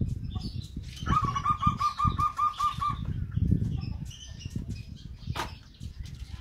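Zebra dove (perkutut) cooing: a quick run of about nine evenly spaced notes, lasting about two seconds and starting about a second in, over low rustling noise.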